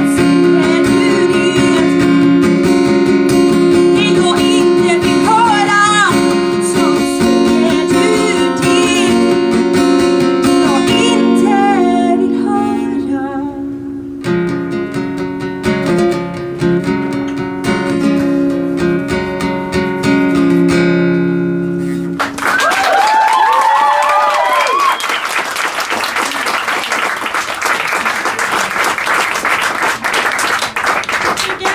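A woman singing to her own acoustic guitar playing. The voice drops out about twelve seconds in and the guitar plays on alone to finish the song about 22 seconds in. Audience applause with a few cheers follows.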